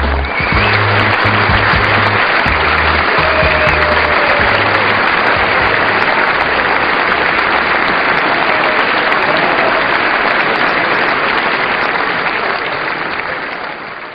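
Large crowd applauding and cheering over the last low bass notes of a song, which stop about halfway; the applause fades away near the end.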